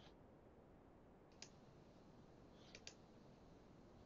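Computer mouse clicking: a single click about a second and a half in, then two quick clicks close together near three seconds, over near silence.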